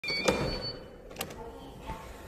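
Digital door lock: a short electronic chime with a sharp click of the latch as the lever handle is pressed, then a second click about a second in as the door swings open.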